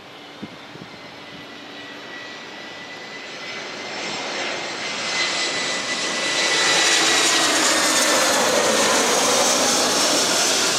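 Airbus A321-211's twin CFM56 jet engines on approach, growing steadily louder as the airliner nears and passes low overhead. A steady high whine runs through the roar and drops slightly in pitch about seven seconds in as the plane goes by.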